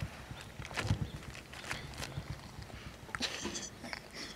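Soft, irregular taps and crinkling of a plastic marshmallow bag as marshmallows are picked out and pushed into the mouth, with a short muffled vocal sound about three seconds in.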